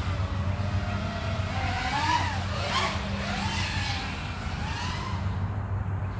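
FPV quadcopter's brushless motors and propellers whining in flight, the pitch rising and falling with the throttle, over a steady low hum.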